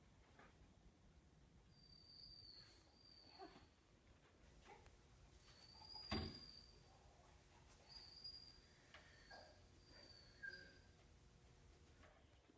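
Quiet room with a few faint, short, high squeaks and soft ticks, and one sharp knock about six seconds in as a dog paws up against a wooden cabinet.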